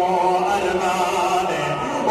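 A man's voice chanting majlis mourning recitation in long, held notes that waver gently in pitch.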